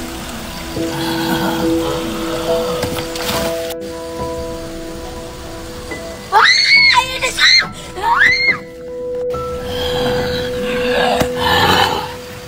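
Background music with long held tones. About six seconds in come three short, loud, high sounds that rise and then fall in pitch.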